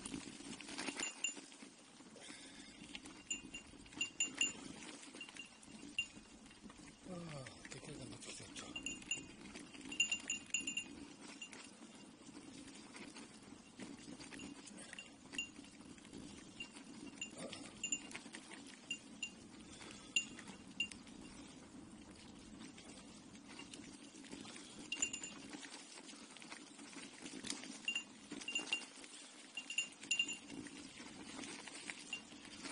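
A small metal bell on a bicycle jingling irregularly, shaken by the bumps of riding a rough dirt track. Short clinks come in clusters, with scattered knocks and a steady low hum of the ride underneath.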